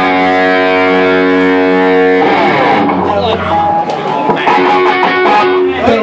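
Electric guitar played live and loud: a chord is held ringing for about two seconds, then gives way to quicker, choppier playing with sharp hits.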